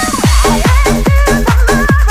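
Scouse house (UK bounce) dance music: a bending synth lead plays over a buzzing riff. About a quarter-second in, a steady kick drum comes in with short bass stabs between the kicks, and the melody carries on above.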